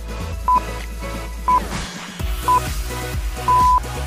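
Quiz countdown timer beeps: short single-pitched beeps about once a second, the last one held longer near the end, over background music.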